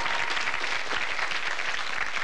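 Studio audience applauding steadily, just after a quiz contestant's correct answer.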